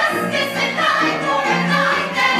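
A chorus of voices singing together over instrumental accompaniment, from a live musical-theatre performance.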